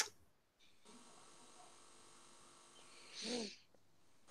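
Quiet room with a single click at the start and, about three seconds in, a brief breathy vocal sound from a person.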